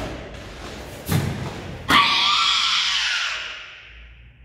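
Karate kata movements: dull thuds of bare feet stamping on foam mats, at the start, about a second in and just before two seconds. Then a loud, drawn-out kiai shout that dies away in the hall's echo over about a second and a half.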